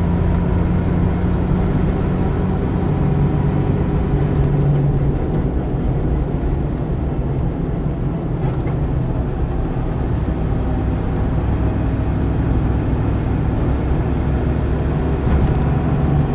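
Land Rover 90's 3.5-litre Rover V8 engine running steadily while the vehicle drives along, heard from inside the cab together with road and drivetrain noise.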